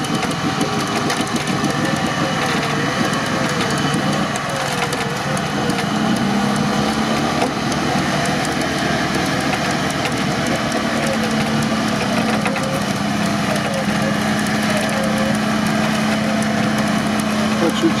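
Engines of a Nissan Patrol and a UAZ running while both sit bogged in deep mud, pulling on their winches under heavy load. A tone wavers up and down through most of it, and a steadier hum comes in about six seconds in.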